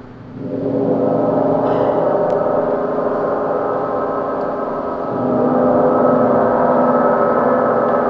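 A large hanging gong ringing with a dense, long-sustained tone that swells up soon after the start and again about five seconds in.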